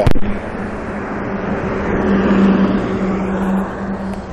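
Street traffic: a motor vehicle's engine hum, one steady low tone over a wash of road noise, growing louder to a peak around the middle and then easing off as it passes.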